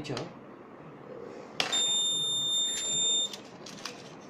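Piezo buzzer on the project board's alarm circuit giving one steady, high-pitched beep of about a second and a half, starting just after a click a little past halfway through. Faint handling clicks from a matchbox come near the end.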